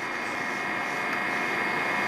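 A steady rushing, engine-like drone with a hissing edge that grows slightly louder.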